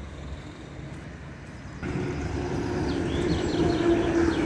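Street traffic, with a city bus going by. It is quiet for the first two seconds, then louder with a steady engine hum, and a few short bird chirps come near the end.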